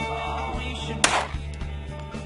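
A single .45 ACP pistol shot from a Springfield XD(M) about a second in, sharp with a short ring-out, over guitar-led background music.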